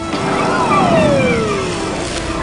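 Cartoon sound effect: a long falling whistle that drops steadily in pitch for about a second and a half, over a rushing rumble, the classic cue for something diving or dropping from the sky.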